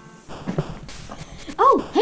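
Soft rustling and small clicks of toys being handled, then a high-pitched, swooping voice starts about one and a half seconds in and is the loudest thing.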